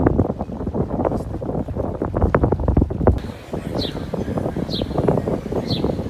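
Wind buffeting the microphone in irregular gusts at the waterfront. About halfway through, it gives way to a quieter outdoor background with a faint high chirp repeating about once a second.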